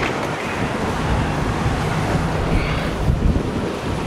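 Wind buffeting the microphone, a steady rushing noise with an uneven low rumble.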